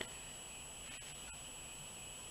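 A pause in speech with a faint steady background: a thin, high-pitched electronic whine over a low hum, with a few faint clicks.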